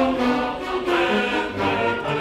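Boys' and young men's choir singing sustained, slow-moving chords together with a symphony orchestra.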